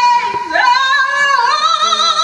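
A woman singing into a handheld microphone: a long held note with vibrato breaks off just after the start, then her voice slides up into a new phrase of held, wavering notes that step down in pitch.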